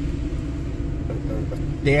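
Steady low rumble of engine and road noise inside the cabin of a moving vehicle, with a man's voice starting again near the end.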